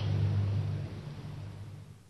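Low steady rumble that fades away over the two seconds.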